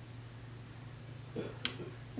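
Quiet room with a faint steady low hum, broken by one sharp click about a second and a half in.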